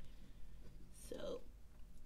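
A brief, quiet whispered word from a woman about a second in, over a low, steady room hum.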